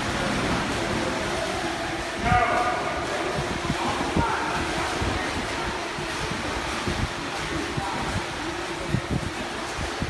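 Indoor swimming pool ambience: steady splashing of swimmers doing laps, with distant voices calling out, the clearest call about two seconds in.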